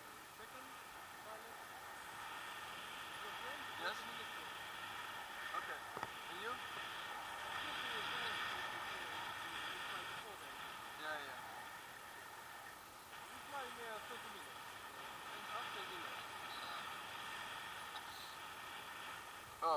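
Steady rush of air over the camera of a tandem paraglider in flight, swelling and easing in strength.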